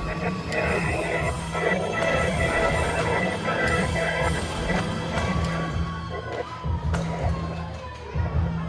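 Film soundtrack: dramatic music under a storm scene, mixed with people's cries and commotion.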